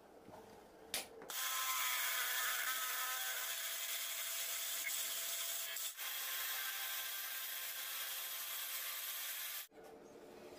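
Drill press boring a hole through a steel flat bar, the twist bit cutting with a steady high-pitched noise that starts about a second in, breaks off briefly midway and cuts off suddenly near the end.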